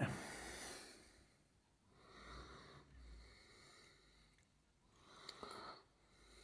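Faint breathing of a person close to the microphone: three or four soft breaths about two seconds apart.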